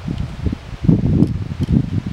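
Wind buffeting the microphone: an uneven low rumble that swells through the middle and is louder than the nearby talking.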